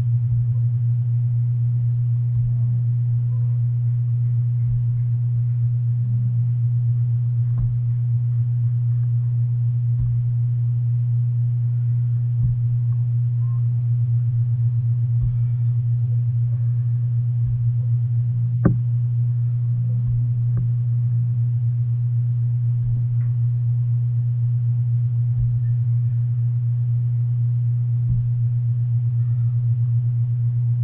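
A steady low hum throughout, with dull, irregular thuds from a long iron digging bar being driven into hard, dry soil, and one sharp click about two-thirds of the way through.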